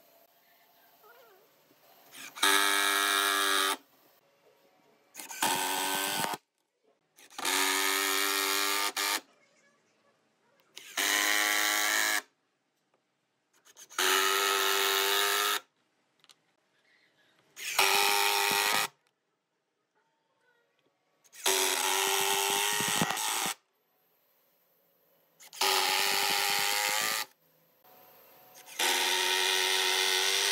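Hitachi cordless drill driving screws into wood, in about nine short runs of one to two seconds each, a steady motor whine every few seconds with pauses between.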